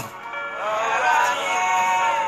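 A man singing a Christian praise chant, in long held notes that slide in pitch.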